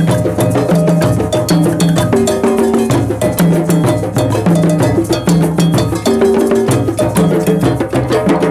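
Drum circle: several hand drums played together in a steady, driving rhythm, with pitched low drum notes repeating under a dense stream of rapid sharp strikes.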